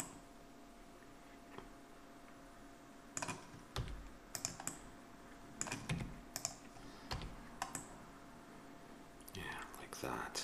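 Computer keyboard keys and mouse buttons clicking in scattered single presses and short clusters, with pauses of a second or more between them.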